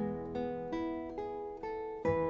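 Background music: a guitar picking single notes, a new note about every half second, each ringing out and fading.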